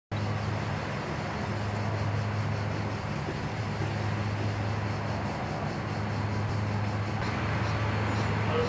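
A steady low hum that holds one pitch throughout, over a faint even background noise.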